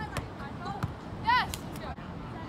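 Basketball game on a gym floor: a few ball bounces and short, sharp sneaker squeaks, the loudest squeak about a second and a quarter in.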